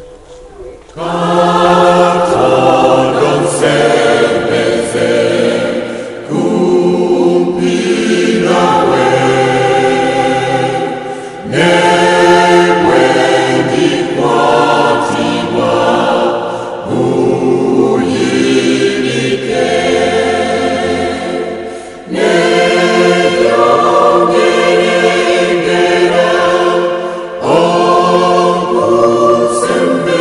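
Music: a choir singing, starting about a second in, in sustained phrases of about five seconds with brief pauses between them.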